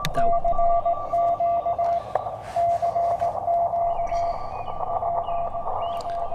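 Morse code (CW) coming through the receiver of a YouKits HB-1B QRP transceiver: a keyed tone of dits and dahs over a band of receiver hiss, with a fainter, higher-pitched second Morse signal keying alongside.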